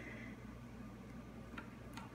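Metal spaetzle maker's hopper sliding along its perforated plate, a faint scraping with a couple of light ticks near the end, over a low steady hum.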